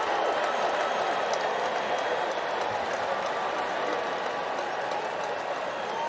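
Ballpark crowd cheering and applauding a home run, a steady wash of noise with scattered claps that eases slightly toward the end.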